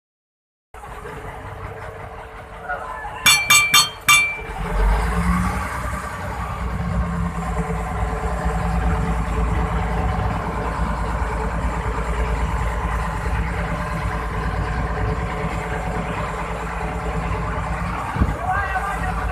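A fishing boat's engine runs steadily with a low, even hum, heard from on board over sea noise. About three seconds in come four short, loud, sharp tones in quick succession, just before the engine hum grows louder.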